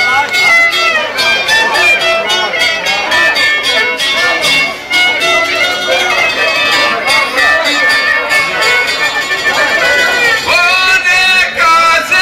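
Live Balkan izvorna folk band playing: a violin carries the melody over stringed-instrument accompaniment. Near the end a man's voice comes in singing through a microphone and PA.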